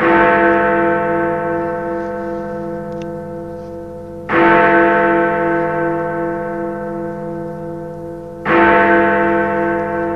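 A large bell tolling three times, about four seconds apart, each stroke ringing on and fading slowly with a wavering hum.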